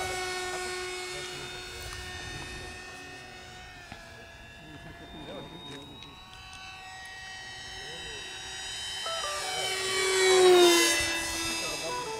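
RC plank flying wing's motor and propeller, a steady high tone that fades as the model flies off. It then grows loud to a fast low pass about ten to eleven seconds in, the pitch dropping as it goes by.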